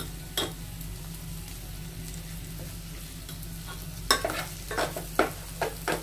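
A metal spoon scraping and knocking against an aluminium pot as curry is stirred, a run of sharp clinks starting about four seconds in, after a single clink near the start. A steady low hum runs underneath.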